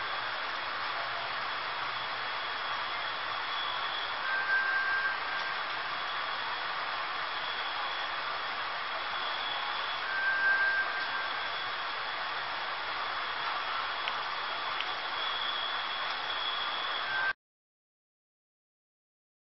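Steady hiss with a thin high whistling tone that comes and goes, and a shorter, lower whistle recurring every five or six seconds; it all cuts off suddenly near the end.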